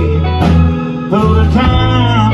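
A live blues band playing a slow ballad: an electric guitar plays a lead line over bass and drums, with notes bent upward in the second half.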